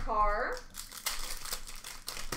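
Crinkling and rustling of trading-card pack wrappers and cards being handled, dense and crackly for about a second and a half, after a brief voice sound in the first half second.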